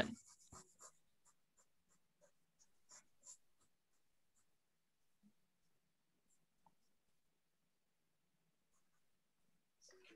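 Near silence with faint, scattered strokes of a pencil scratching on paper: sketching, the strokes clustering about three seconds in.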